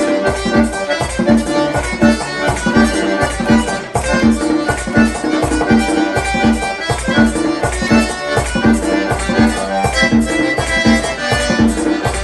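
Diatonic button accordion playing a merengue típico melody over a steady beat of percussion and bass, about four strokes a second.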